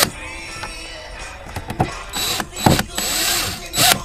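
DeWalt cordless drill with a 90-degree right-angle extension driving a screw into a compass's metal mounting bracket in a few short bursts, tightening it down.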